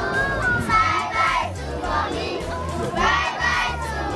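A crowd of children shouting and singing together over background music.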